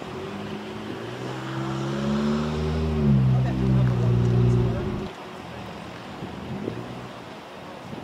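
A motor vehicle's engine passing close by, growing louder over about three seconds with its pitch dropping as it goes past, then cutting off suddenly about five seconds in.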